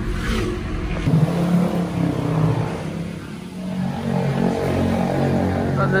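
Motor vehicle engine noise. Low road rumble from inside a moving car gives way, about a second in, to a steadier, pitched engine hum.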